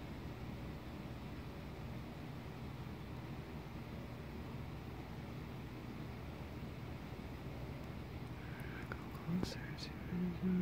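Steady low background rumble with no distinct events. A quiet, hushed voice starts speaking near the end.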